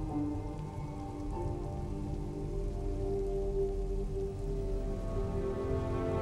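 Heavy rain falling steadily, under a slow film score of long held notes that shift a few times.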